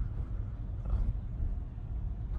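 Steady low road and tyre rumble heard inside the cabin of a moving Tesla on slick winter roads.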